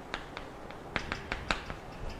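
Chalk writing on a chalkboard: a run of irregular sharp ticks and taps as the chalk strikes and strokes across the board.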